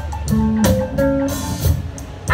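Live electric blues band playing: electric guitar phrases over bass and a drum kit, with a cymbal wash about halfway through.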